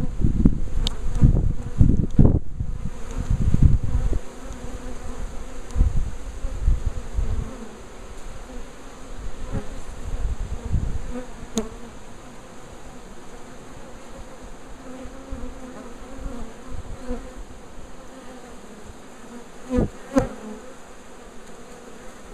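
Swarm of honeybees humming steadily at close range as they crowd over the hive's top bars. Low rumbling noise on the microphone fills the first four seconds, and two short knocks come about twenty seconds in.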